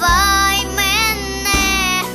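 A young girl singing held, bending notes into a microphone over a backing track with a steady bass line and a drum hit about one and a half seconds in.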